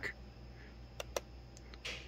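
Two quick clicks of a laptop mouse or touchpad about a second in, a fifth of a second apart, as the tuning software switches between files, over a faint low hum.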